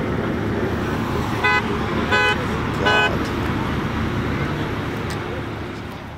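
Road and street noise with a vehicle horn honking three short times, about two-thirds of a second apart; the sound then fades out.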